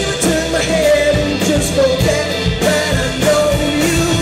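Live rock band: a man singing over a strummed acoustic guitar, with drums and cymbals keeping the beat.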